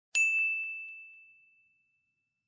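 A single bright ding sound effect: one high, bell-like tone that strikes sharply and rings out, fading away over about a second and a half with a few faint quick echoes.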